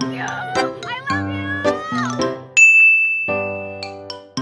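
Edited-in background music of short struck notes. About two and a half seconds in, a loud, bright single ding rings for about a second.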